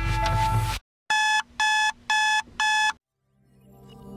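Music cuts off under a second in. Then an electronic beeper sounds four short, even beeps, about two a second, in the pattern of a digital alarm clock. After a brief silence, soft music fades in near the end.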